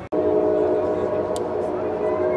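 A train horn sounding one long, steady chord of several notes, starting suddenly a moment in.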